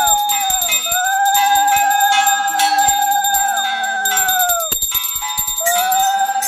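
A conch shell (shankha) blown in long, steady notes, each ending in a downward bend in pitch, with a short break about a second in and another near the end. A hand bell rings rapidly underneath.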